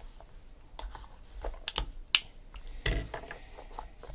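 Trading cards and a small cardboard card box handled by hand on a table: a scatter of sharp clicks and taps, the loudest a little past two seconds in, with a duller knock just before three seconds.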